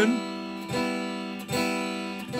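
Electric guitar strummed three times on the open G, B and high E strings, a three-note E minor chord, each strum left to ring.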